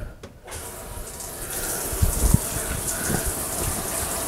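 Kitchen faucet water running into the stainless sink and down through the newly fitted drain baskets and PVC drain, heard from under the sink. It starts about half a second in and builds to a steady rush, with a couple of low thumps about two seconds in.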